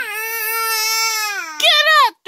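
Baby crying: one long, high, held cry, then a louder and higher cry near the end.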